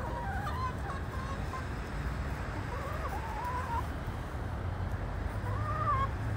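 Backyard hens calling softly while they forage: short, wavering calls come in three runs, near the start, in the middle and near the end, over a steady low hum.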